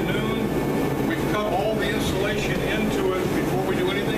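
A man's voice talking, indistinct, over a steady low hum that runs unbroken underneath.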